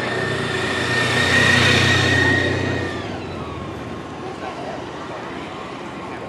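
Police motorcycle riding past close by: a low engine hum with a steady high whine, loudest about a second and a half in, then dropping in pitch and fading away about three seconds in.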